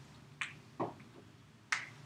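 Whiteboard marker clicking and tapping against the board: three short, sharp clicks, the last one near the end, in a quiet room.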